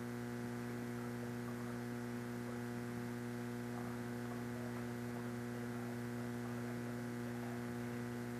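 Steady electrical mains hum with a stack of even overtones running through the broadcast audio feed, unchanging throughout.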